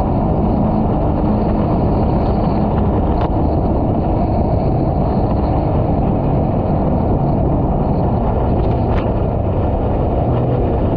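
Mini jet boat running steadily on a river: a continuous engine and jet drone mixed with water rushing along the hull.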